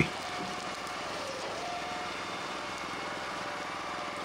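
Small gasoline engines of a hydraulic firewood processor and its log conveyor running steadily at constant speed.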